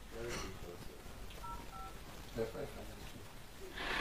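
Two short telephone keypad (DTMF) tones about a second and a half in, each a pair of steady beeps sounding together, amid faint low-level speech.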